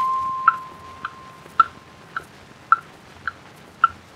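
Instrumental introduction on a 1923 acoustic Edison Diamond Disc recording. A single held note fades away, then short, evenly spaced pitched ticks come about twice a second, like a clock ticking, over record surface hiss.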